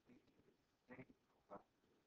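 Near silence with a faint, distant voice: a student asking a question off-microphone, a few short syllables about halfway through.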